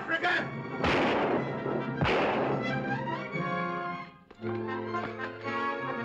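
Two gunshots about a second apart, about one and two seconds in, each trailing off in echo, over a dramatic orchestral film score. The music breaks off briefly about four seconds in and then starts again.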